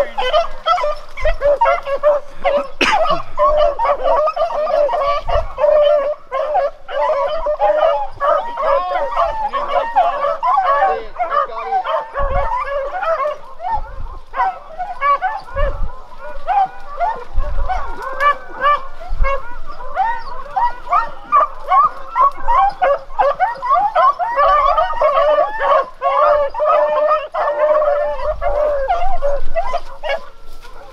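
A pack of beagles baying on a rabbit's track, many voices overlapping without a break.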